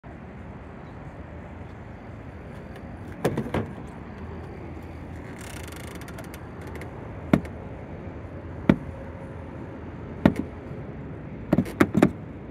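A Tesla Supercharger charging handle being pulled from its holster and carried to a car's charge port, making a string of sharp plastic-and-metal clunks and clicks: a cluster about three seconds in, then single ones every second or so. A brief hiss comes about halfway through, over a steady outdoor background.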